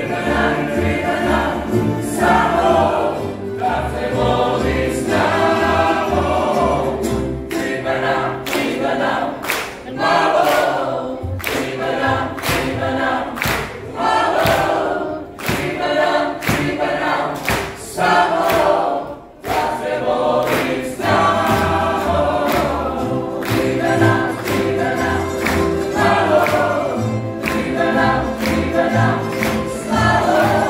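Tamburitza orchestra playing live: tamburicas (small plucked folk lutes) strummed in a steady, even rhythm under a woman and a man singing, with other voices joining.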